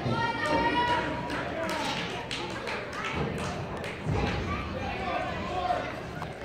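Several people's voices talking in the background, with a few short thuds and taps in between.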